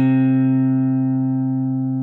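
A hollow-body electric guitar's fourth string, detuned a whole step to C, plucked once and left ringing as a single sustained note that slowly fades.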